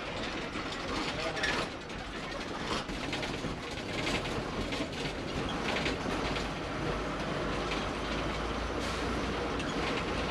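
A vehicle driving over a rough, rocky dirt track, heard from inside the cabin: a steady low rumble with irregular rattling and knocking as it goes over the bumps.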